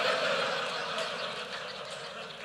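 Audience laughing together, loudest at the start and slowly fading.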